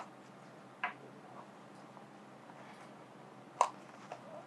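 Light clicks and taps from a fountain pen and its cap being lifted out of a presentation box and set down on a table: three short ones, the sharpest near the end.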